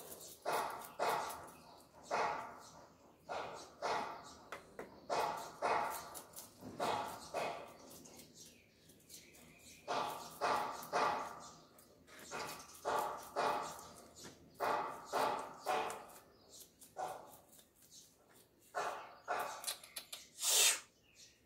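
A dog barking repeatedly, the barks often coming in pairs, with a short lull about halfway through.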